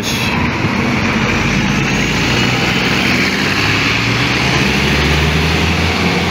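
City bus running close by at a stop, its engine a steady low drone over road and traffic noise. The engine note grows stronger about four seconds in.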